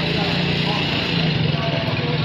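A small engine running steadily with a low, even hum, with faint voices behind it.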